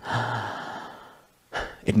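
A man sighs: one long, breathy exhale that fades away over about a second.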